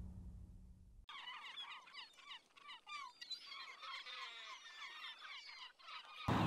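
The last of the theme music fades out within the first second, then birds chirp faintly: many short, quick calls overlapping until just before the end.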